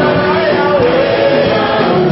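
Church choir singing a gospel song, loud and continuous, with the melody rising and falling.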